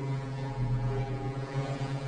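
A low, steady drone held on one pitch, with fainter overtones above it.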